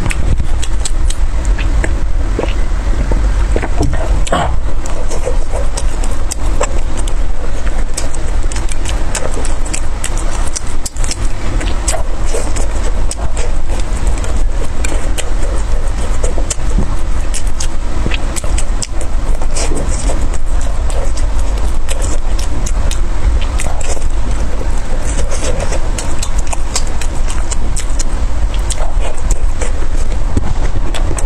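Close-miked chewing and wet mouth clicks of someone eating soft steamed buns, with a steady low rumble underneath.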